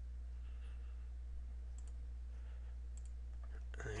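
A few faint computer mouse clicks, a pair about halfway through and more near the end, over a steady low electrical hum.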